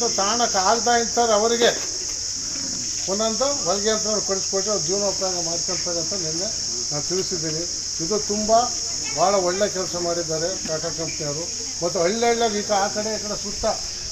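Steady, high-pitched chirring of insects, typical of crickets, running without a break under a man's speech.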